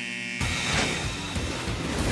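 A short, high, steady electronic start-signal beep. About half a second in it gives way to upbeat cartoon background music, which bursts in with a crash and carries on.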